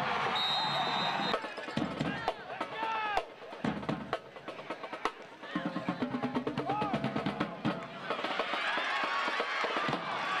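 Drums playing fast snare-drum hits and rolls under a crowd of voices shouting. A short held chord of lower tones comes in near the middle.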